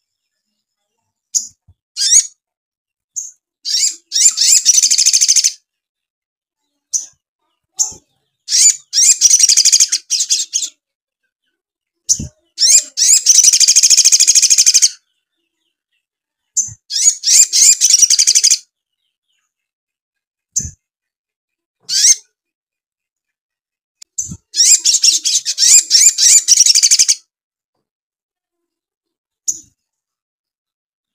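Caged male olive-backed sunbird (sogon) singing in loud, rapid, high-pitched chattering bursts of two to three seconds, five in all, with short single chirps between them. Its song is filled with imitated Eurasian tree sparrow fighting chatter.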